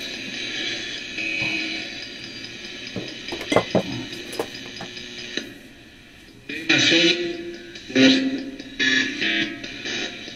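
Radio Shack 12-150 radio used as a ghost box, sweeping through the AM band and played through a guitar amp: hissing static with faint tones and clicks, dipping quieter about six seconds in, then choppy louder bursts of broadcast voice and music fragments.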